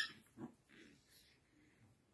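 Puppies playing: a brief high squeak right at the start, then a few faint short sounds from the small dogs over the next second.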